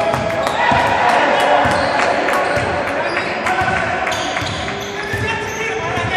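Basketball bouncing on a hardwood court, with players calling out, echoing in a large gym.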